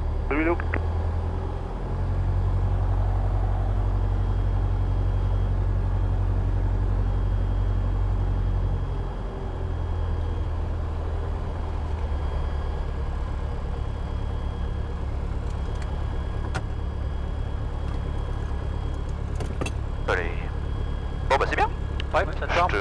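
Robin DR400's four-cylinder piston engine running at low power as the aircraft taxis after landing: a steady low drone. It picks up slightly about two seconds in and eases back again about nine seconds in.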